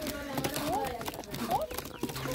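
Pigeons pecking scattered paddy grains off brick paving: a quick, irregular patter of small taps, with short rising-and-falling calls over it.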